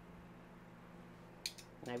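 A faint, low, steady hum. About one and a half seconds in comes a brief sharp hiss, just before a voice begins.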